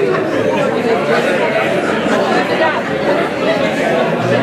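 Dinner guests talking all at once around the tables: a steady hubbub of overlapping conversation, with no one voice standing out.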